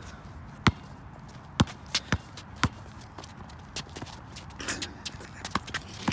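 Basketball bouncing on an outdoor concrete court: several sharp dribbles in the first three seconds, then lighter, scattered knocks as the ball is fought over.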